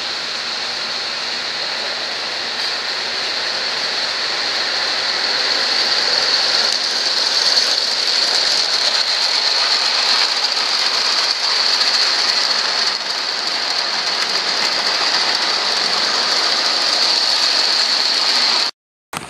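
Live-steam garden-scale freight train running past, a steady hissing rush of steam and rolling cars that grows louder about six seconds in as the train draws near.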